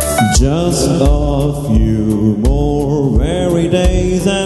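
A man singing a devotional song into a microphone in a melismatic, sliding style, over amplified instrumental backing with sustained chords and a steady beat.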